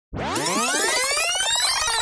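Synthesized sweep sound effect: a cluster of tones glides up in pitch and begins to fall back near the end.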